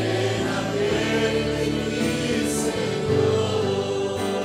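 Church congregation singing a Spanish worship chorus together, with sustained instrumental backing.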